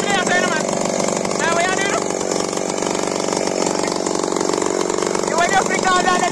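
Two-stroke chainsaw, the Echo Godzilla 1201, running steadily at a constant pitch, with a voice heard briefly over it a few times.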